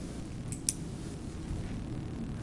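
Meeting-room background noise with a low steady hum, broken by a brief sharp click about two-thirds of a second in.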